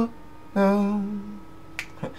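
A man's voice holds a short wordless note with no accompaniment. Near the end comes a single finger snap, keeping time with the song.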